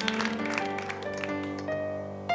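Electronic keyboard playing a slow, unaccompanied intro: a held low bass note under sustained chord tones, with a simple melody moving note by note above it.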